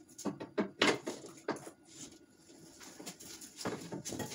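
A few scattered light knocks and bumps as a drywall sheet is held and shifted against wooden wall studs.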